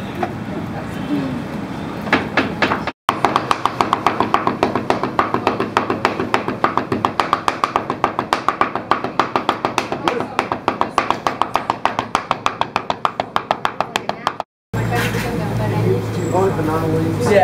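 Meat cleaver chopping rapidly on a round wooden chopping board: an even run of sharp knocks, about five a second, that starts a few seconds in and cuts off near the end.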